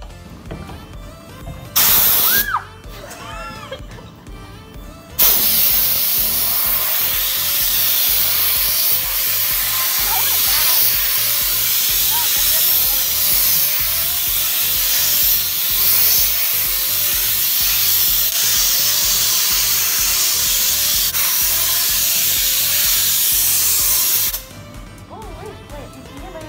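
Compressed-air blow gun on a coiled air hose blowing air across a wet screen-printing screen to dry it. There is a short blast about two seconds in, then a long continuous hiss from about five seconds in until shortly before the end.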